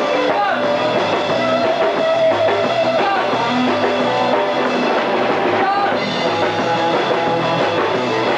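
Live rock band playing a song at a steady, loud level, with drum kit and electric guitar.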